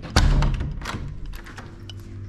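Brass barrel bolt on a wooden door slid back with a loud clack just after the start, followed by a second, smaller knock just under a second in as the door is worked open.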